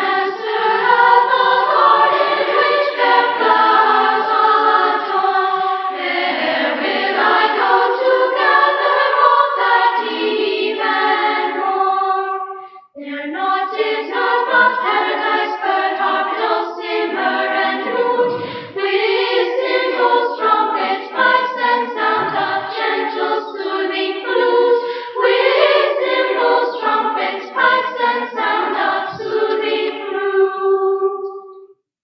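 Children's choir singing, played back from a cassette tape with little treble. The singing breaks off briefly a little before halfway, then resumes.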